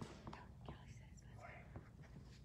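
Near silence: faint whispering, with a few light clicks and the rustle of sheets of paper being handled.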